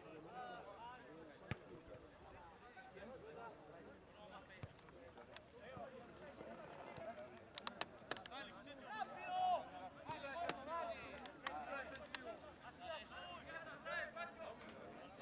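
Faint, distant voices of rugby players and onlookers calling and talking across an open field, with a few sharp clicks, most of them bunched together a little past halfway.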